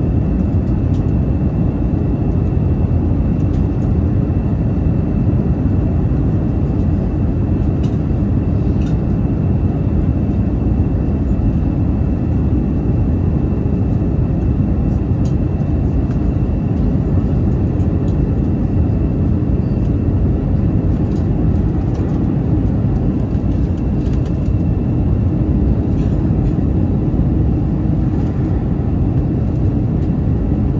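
Steady low rumble of an Airbus A319's engines and rushing airflow heard from inside the passenger cabin during the descent, with a faint high whine that fades out about halfway through.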